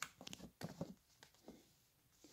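Faint, scattered light clicks and knocks as plastic canisters of scouring powder are handled in a cardboard box.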